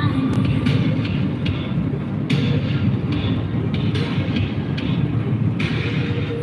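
Steady road noise inside a car travelling at motorway speed: a dense, even low rumble of tyres on asphalt and engine.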